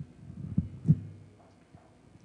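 Two dull low thumps about a third of a second apart, the second louder.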